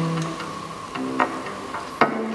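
Double bass plucked pizzicato: a low note at the start and another about a second in, with a few sharp clicks in between.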